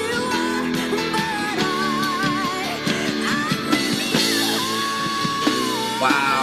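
A female lead singer with a live rock band of guitars, keyboard and drums. She holds long, wavering notes and climbs into a belted high note near the end.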